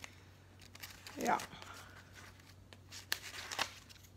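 Light paper rustling and a few sharp clicks, most of them near the end, from handling a glue stick and the pages of a magazine-collage glue book.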